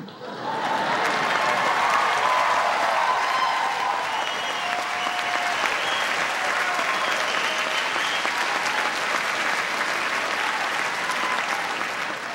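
Large dinner audience applauding, swelling up within the first second and then holding steady, with a few voices rising above the clapping.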